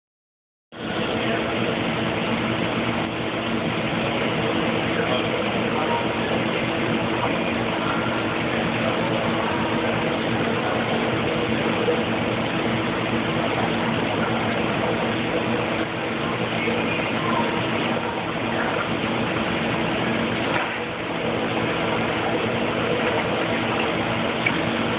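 Steady hum and rushing water of aquarium pumps and filters, starting abruptly just under a second in.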